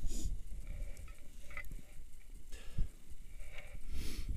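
Wind on the microphone of a helmet-mounted camera, a low rumble, with short rustles of clothing and harness near the start and again later.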